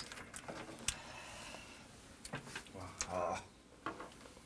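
A few short, sharp clicks of small glasses and tableware tapping on a table, with a brief low voice murmur about three seconds in.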